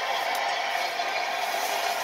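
A steady hiss of room noise with no other sound in it.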